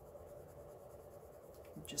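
Faint scratching of a CastleArts coloured pencil rubbed back and forth on coloring-book paper, blending the petal with the lightest shade.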